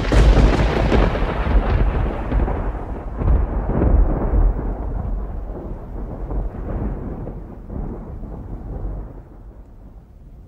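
A sudden loud rolling rumble, heaviest in the low end, that swells again several times and fades away slowly.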